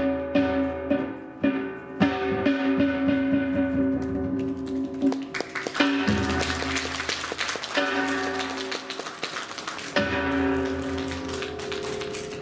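Korean Buddhist ritual dance music: a sustained pitched melody line over quick drum and gong strokes. Between about four and ten seconds in it turns into a denser passage of rapid strokes, then the held melody returns.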